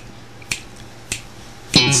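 Two sharp finger snaps about half a second apart in a quiet gap. Near the end, a radio station ID jingle starts with guitar and a sung "91.6".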